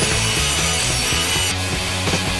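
Bench grinder wheel grinding a steel bar, a steady grinding hiss over punk rock music; the grinding stops about one and a half seconds in.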